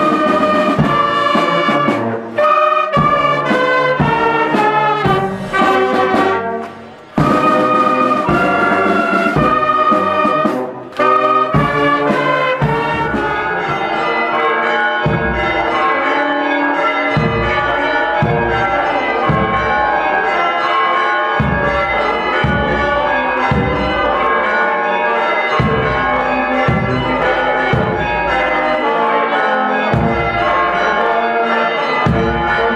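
Greek marching band playing a march on flutes, saxophones and brass in held melodic phrases, broken by brief pauses. About thirteen seconds in the sound changes to a dense, continuous clangour of church bells ringing over the band's drum beats.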